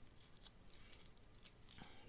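Near silence, with a few faint small clicks and rustles scattered through it.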